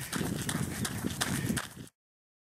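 Running footsteps: a steady rhythm of footfalls from a jogger on a path, which cuts off suddenly near the end.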